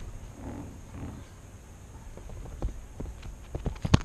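A squirrel scurrying across a leather tabletop and then handling a GoPro camera: irregular light taps and scratches right at the microphone, coming faster and louder toward the end, with a sharp knock near the end.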